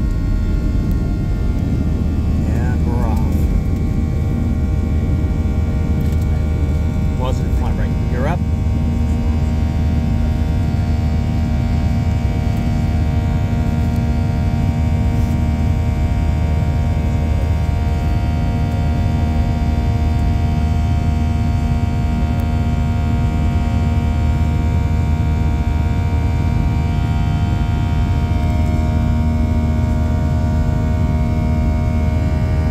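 Boeing 737-700's CFM56-7B jet engines at takeoff thrust, heard inside the cabin: a steady, loud low rumble with several steady whining tones layered on top. This runs through the takeoff roll, liftoff and initial climb.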